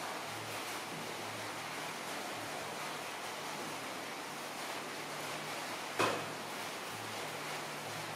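Steady background hiss with a faint low hum coming and going, and one sharp click about six seconds in.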